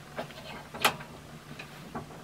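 Steel bench vise being opened by its handle: a few light metallic clicks and one sharp clack a little before the middle, over a faint steady low hum.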